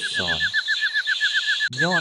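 A rapid, steady chirping, about eight short chirps a second, under a voice speaking Lao.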